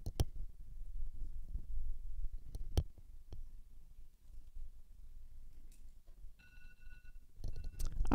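Quiet room with a low rumble and a few isolated sharp clicks. A steady high tone comes in about six and a half seconds in and lasts about a second.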